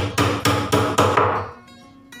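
Hammer striking a wooden cabinet board in a quick run of about six blows, roughly four a second, stopping about one and a half seconds in.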